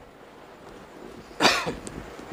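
A man coughs once, short and sharp, close to a headset microphone about one and a half seconds in, with a faint click just after.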